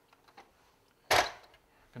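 A few faint clicks of hard plastic as hands handle a 1981 Kenner Slave I toy, then a short breathy burst of a man's voice about a second in.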